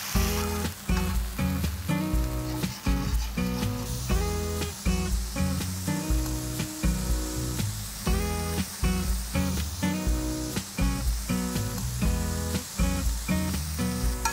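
Background music with a regular beat and bass line, over the sizzle of a tomato, curd and ghee masala frying on a tawa as it is stirred with a spatula, cooking until the oil separates.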